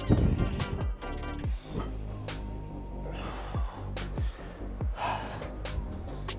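Background music with a steady beat, over which a man breathes out hard several times, gasping after a heavy set of leg curls. A loud thud comes right at the start.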